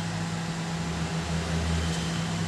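Steady low electrical hum with a fan-like hiss from the repair bench equipment, unchanging throughout, with no tool strikes or clicks.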